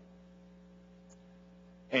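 Steady electrical mains hum during a pause in speech. A man's voice starts again near the end.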